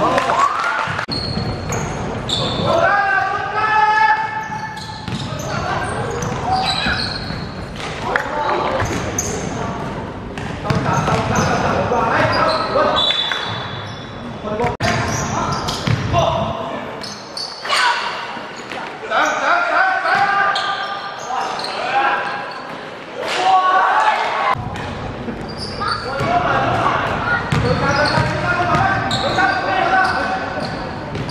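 Basketball game in a sports hall: the ball bouncing and dribbling on the wooden court amid players' and spectators' shouts and calls, all echoing in the large hall.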